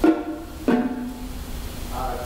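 Two stick strokes on drums, the second a lower-pitched drum that rings on for most of a second.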